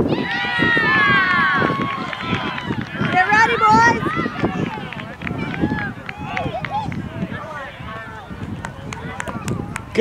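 High-pitched voices calling and shouting, with one long held call in the first two seconds, then scattered shouts and chatter.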